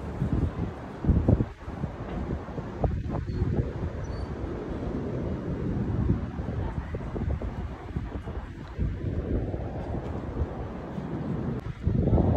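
Wind buffeting a phone microphone outdoors: an uneven, gusty low rumble, strongest in the first couple of seconds.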